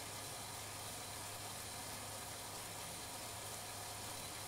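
Steady, even whir and hiss of a road bike's rear tyre spinning on an indoor trainer as the rider pedals at an easy pace.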